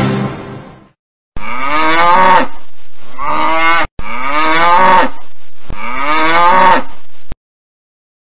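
Music fades out, then a cow's moo sounds three times in a row, each about two seconds long. The three calls match and each starts and stops abruptly, like a repeated sound effect.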